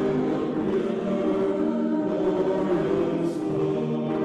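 A choir singing slow, sustained chords.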